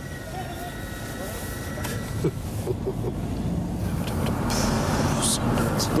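Open-top Mercedes-Benz E-Class Cabriolet driving off: engine, road and wind noise growing steadily louder as it gathers speed, with a thin steady whine during the first two seconds.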